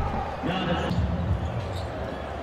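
Basketball being dribbled on a hardwood court, heard under the game's ambient court sound, with faint voices in the background.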